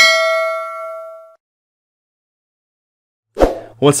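Notification-bell 'ding' sound effect: one bright metallic chime that rings and fades away over about a second and a half. A man's voice starts near the end.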